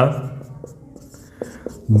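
Marker pen writing on a whiteboard: faint scratching strokes with a couple of short taps about one and a half seconds in.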